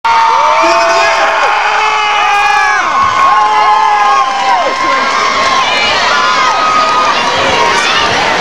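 Loud crowd cheering and screaming, many voices holding long high shouts over one another without a break.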